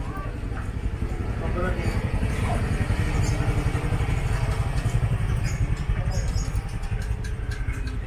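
Small motor scooter engine running close by, a low rumble that builds to its loudest around the middle and then eases off, with faint voices.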